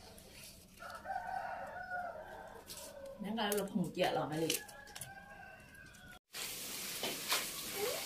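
A rooster crowing once, a drawn-out call that starts about a second in and lasts a second and a half or so.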